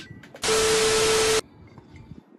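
A burst of loud static-like hiss with a steady mid-pitched tone inside it, lasting about a second and switching on and off abruptly. It is typical of a sound effect added in editing.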